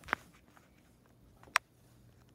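Two sharp footsteps on indoor stairs, about a second and a half apart, with little else to hear between them.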